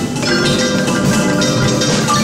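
Marimbas in a percussion ensemble, several players striking quick runs of notes with yarn mallets, many pitches sounding together.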